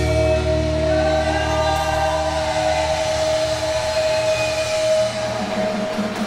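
Rock song's closing chord ringing out: a long steady held note over sustained tones, with the low end fading away over the first few seconds.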